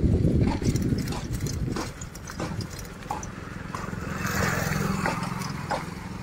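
Low rumble with rattling clicks for the first two seconds, then a motorcycle engine running with a steady low hum; a hiss rises briefly about four seconds in.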